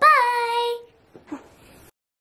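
A young girl's voice singing out one drawn-out note, its pitch rising and then settling, lasting under a second.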